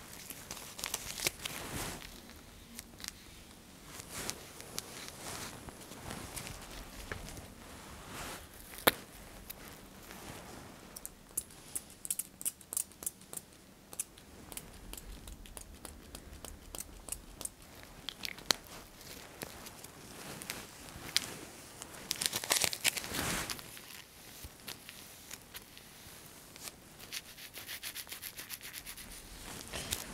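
A person's bare back being wiped and rubbed down to clean off skin-marker ink from back mapping. The rubbing is soft and uneven, with many light crinkles and clicks scattered through it and a busier patch of quick clicks partway through.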